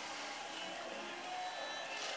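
Low, steady background hiss of a hall during a pause in a stage play, with a few faint scattered tones.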